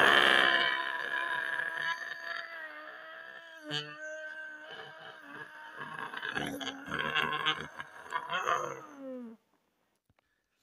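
A person's voice holding one long drawn-out cry at a nearly steady pitch for about nine seconds, with a short break a little before the middle, then sliding down and cutting off near the end.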